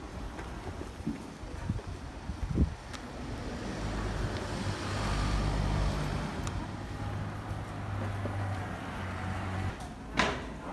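Street traffic: a motor vehicle's engine running nearby as a steady low hum that swells about halfway through. There is a single knock about two and a half seconds in.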